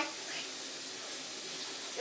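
Steady, even hiss of room noise in a lull between voices, with no distinct event.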